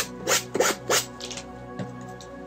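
Quick scratchy strokes of a paint tool dragged across a stretched canvas, about three a second, loudest in the first second and fainter after. Soft background music with sustained tones plays under them.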